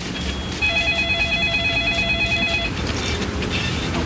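A telephone rings once with a warbling electronic trill for about two seconds, over low background noise.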